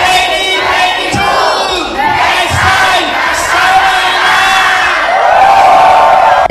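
A large crowd shouting and cheering together, many voices overlapping, growing louder near the end.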